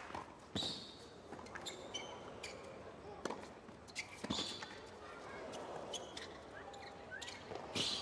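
A tennis rally on a hard court: a racket strikes the ball several times, each hit a sharp crack a second or more apart, with short squeaks of shoes on the court between the shots.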